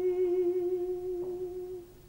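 Operatic tenor voice holding one long sung note with a wide vibrato and nothing accompanying it. The note breaks off shortly before the end, and a faint click comes about a second in.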